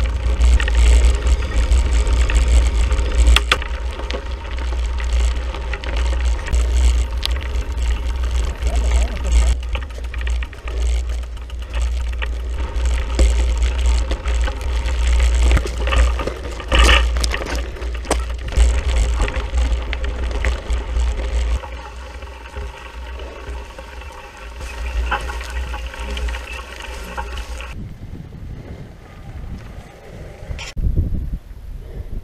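Wind buffeting an action camera's microphone while riding a mountain bike, with the clatter and rattle of the bike over rough ground. The noise drops about two-thirds of the way through and changes abruptly near the end.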